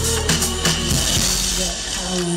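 Live electro-pop band playing, with a drum-kit beat over sustained bass and keyboard tones.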